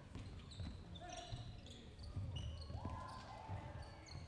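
Faint basketball bounces on a hardwood gym floor, with short high sneaker squeaks scattered throughout.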